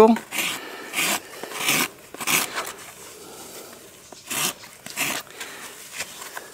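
Hand rasp strokes scraping across a horse's hoof: about four quick strokes, a pause, then two more, rasping a bevel (a Brumby roll) at the toe.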